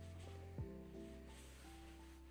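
Faint lo-fi background music: soft chords over a low bass note, a new chord struck about once a second.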